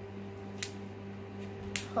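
Two short, sharp clicks about a second apart over a steady low hum.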